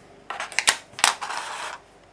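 Clear plastic Figma display base and stand arm handled and set down on a wooden desk: a few light plastic clicks and taps, the sharpest about a second in, followed by a short scraping rustle.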